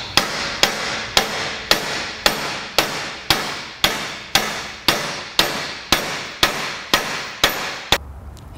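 A two-pound sledgehammer striking a steel wedge driven into the back of a welded steel corner joint, sharp metal-on-metal blows with ringing, about two a second and very even, some fifteen in all. The wedge is prying the plates apart to load a weld that was ground down flush, too thin to hold.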